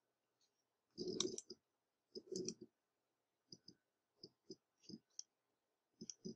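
Computer mouse clicking softly: two fuller clicks in the first half, then a quicker run of about six light ticks.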